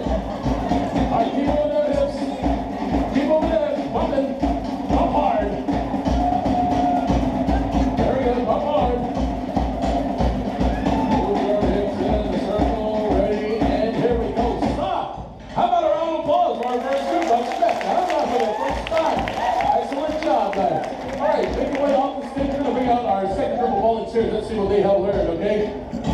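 Fast Polynesian drumming, the cue for the hip-circling dance, which stops suddenly about fifteen seconds in. The crowd's voices and some cheering follow.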